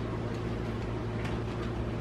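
A steady low hum with a light background haze, and no distinct sound events.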